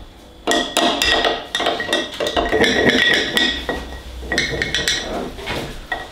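A spoon stirring sourdough starter and water in a glass jar, knocking and scraping against the glass in quick repeated clinks that start about half a second in, with a faint ring from the jar.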